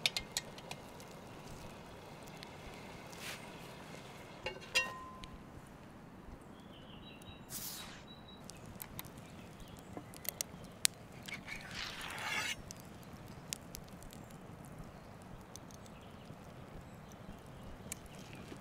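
Cast-iron Dutch oven handled by its wire bail handle, giving a short metallic clank with a brief ring, then a cleaver cutting braised beef brisket on a wooden board, with a couple of short scraping strokes of the blade against the wood.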